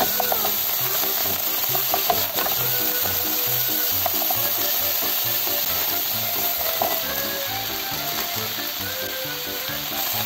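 Sliced pork sizzling in hot oil in a nonstick frying pan, stirred with a wooden spatula that scrapes and taps against the pan now and then. About two-thirds of the way in, pre-cut cabbage and carrot go in and are stir-fried with it, and the sizzle eases a little.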